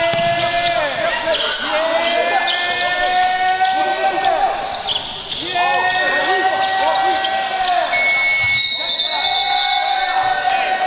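Basketball being dribbled and sneakers squeaking on a hardwood gym floor. Over it, a long high-pitched held call sounds again and again, each about two seconds long and returning every three to four seconds.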